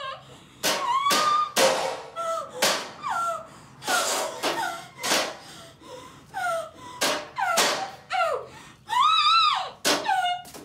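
A gagged woman's muffled cries and whimpers, about one a second, each with a sharp sobbing breath; a longer, higher cry that rises and falls comes near the end.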